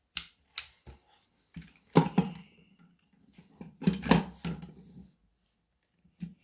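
Plastic clicks and knocks of Lego pieces being handled as wheels are pushed onto a Lego car, with louder knocks about two and four seconds in.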